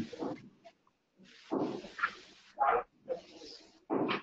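A dog barking a few times, short separate barks with pauses between them.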